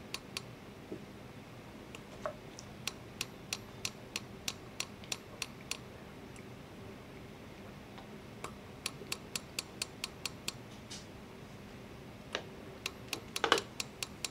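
Light, sharp taps of a small hammer on a metal ring shank lying on a steel anvil block, in runs of about three taps a second with pauses between. The taps flatten and tidy the ring's edges where the metal has spread over the top.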